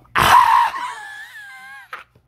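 A high-pitched voice gives a loud, breathy gasp, then a high, wavering wail that dips in pitch and trails off after about a second, in shock.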